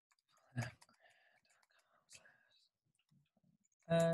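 Computer keyboard and mouse: one sharp click about half a second in, then faint, soft key taps while a web address is typed, under quiet muttering. A short voiced sound from the typist comes right at the end.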